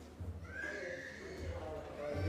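People talking as a congregation breaks up in a hall, with one high, drawn-out voice that rises and then holds steady from about half a second in, over lower murmuring voices.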